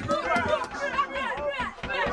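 Several young people's voices talking and calling out over one another.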